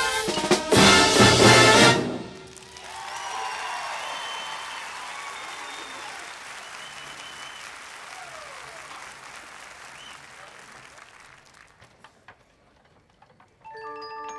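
Marching band brass and drums play a loud final chord with percussion hits that cuts off about two seconds in. Crowd applause follows and fades away over about ten seconds, nearly dying out before mallet percussion notes begin right at the end.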